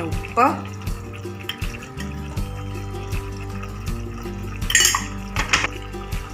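Metal spatula clinking and scraping against a pan as spices and salt are stirred into chopped bitter gourd, a few sharper knocks about five seconds in, over steady background music.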